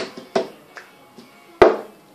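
Cup song rhythm played slowly: two sharp hand claps close together, then a heavier knock of the cup on the table about a second and a half in.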